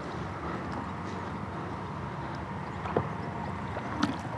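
Steady wind and water noise around a kayak, with one small knock about three seconds in.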